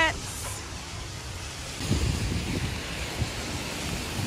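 Steady hiss of rain on a wet city street, with some faint low sounds about halfway through.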